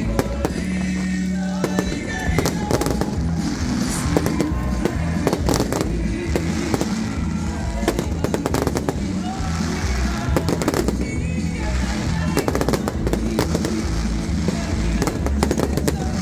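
Aerial fireworks: rockets bursting and crackling in quick, irregular succession, many sharp bangs. Music plays underneath.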